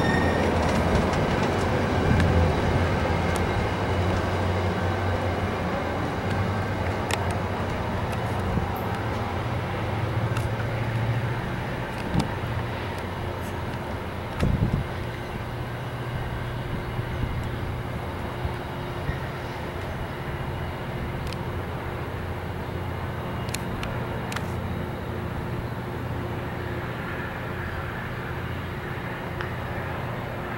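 Virginia Railway Express bilevel passenger coaches rolling past on the rails with a steady rumble and wheel clatter. The sound slowly fades as the rear cab car draws away, with a few sharp clicks and a thump about halfway through.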